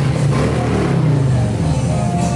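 Large V-twin touring motorcycle engine running loudly, a deep low rumble that rises and falls a little in pitch as the throttle is worked.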